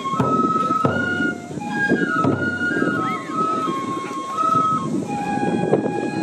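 Japanese transverse bamboo flute playing a held, stepping melody for a nembutsu kenbai folk dance. A few drum strokes sound, near one and two seconds in.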